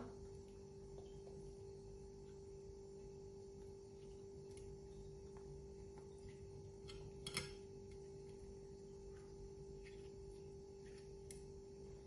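Quiet kitchen with a faint steady hum, and a few soft clicks and taps from hands pressing rice-and-parsley stuffing into hollowed carrots over a plate; one click stands out about seven seconds in.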